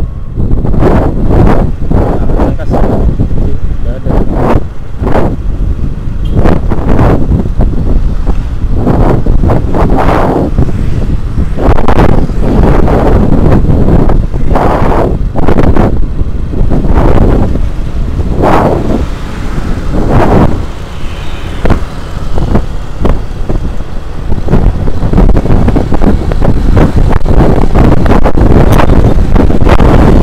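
Wind buffeting the microphone of a moving motorcycle in irregular loud gusts, over the low, steady running of the motorbike's engine and road noise.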